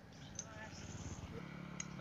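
Quiet handling of scrap metal parts by hand: two faint light clicks, about half a second in and near the end, as a tap and a small metal bracket are picked up from a pile.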